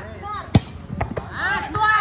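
A volleyball being hit by hand in play: one sharp smack about half a second in, the loudest sound, and a lighter hit about a second in.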